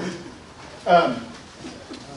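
A person's voice: one short vocal sound about a second in that slides down in pitch.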